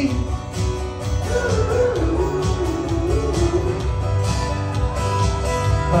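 Live amplified acoustic guitar strumming over a steady pulsing bass beat, with a wavering melody line rising and falling through the middle.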